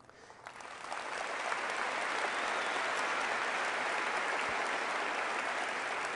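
Audience applauding, swelling over about the first second and then holding steady.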